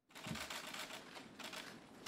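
Faint, rapid, overlapping clicks of laptop keyboards being typed on, starting suddenly.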